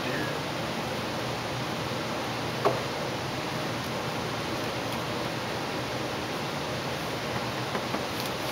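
Steady hiss with one short knock about two and a half seconds in.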